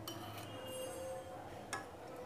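A steel spoon clinking against the side of a steel saucepan of milk, twice: a light clink with a brief ring at the start, and a second sharp clink near the end.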